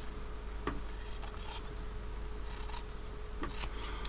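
Scissors cutting through layered fabric: several short snips about a second apart as the edges of a tacked stitchery tag are trimmed to size.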